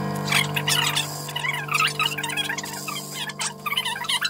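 Background music of sustained held chords, with many quick high chirps running over them.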